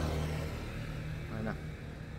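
A motorbike engine passing close by as a low, steady hum that fades away near the end.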